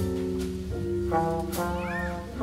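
School jazz combo playing live: horns (trumpet, trombone, saxophones) holding chords that change every half second or so over drums and bass, with cymbal hits. Near the end, one note bends up and back down.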